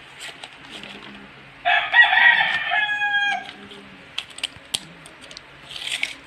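A rooster crows once, about two seconds in, a single call lasting a second and a half that ends on a held, slightly falling note. Scattered light clicks and a brief rustle of handling follow.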